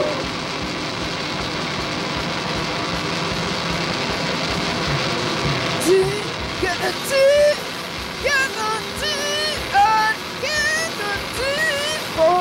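Live noise-rock band playing a dense, noisy wash of electric guitar. From about six seconds in, a string of short gliding pitched cries or squeals rises over it.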